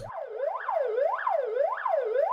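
Siren on a GAZ prisoner-transport truck, its pitch rising and falling steadily about twice a second.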